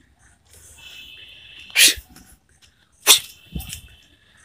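An Indian street dog sneezing: two short, sharp sneezes about a second and a half apart, the second followed by a smaller snort.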